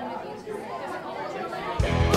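Background chatter of several people talking in a large room. Near the end a punk rock band comes in suddenly and loud.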